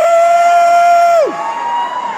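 A voice in a crowd letting out a long, high held shout: it scoops up, holds steady for about a second and drops away, then a shorter, higher shout follows over crowd noise.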